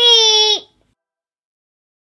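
A young girl's voice holding one long, high sung note of the sign-off; it stops abruptly a little over half a second in.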